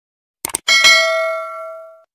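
Two quick clicks, then a bell-like ding that rings and fades over about a second and a half: the mouse-click and notification-bell sound effect of a subscribe-button animation.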